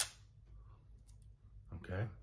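A single sharp mechanical click from a Pentax MG film SLR's film-advance lever being worked, followed by a few faint ticks of the winding mechanism.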